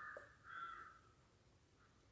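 Two faint, short bird calls about half a second apart in the first second, then near silence.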